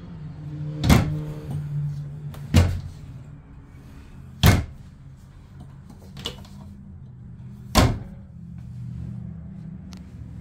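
Glass-panelled overhead kitchen cabinet doors being opened and shut by hand, four sharp knocks spread across the few seconds as the doors swing and close. A low steady hum runs underneath.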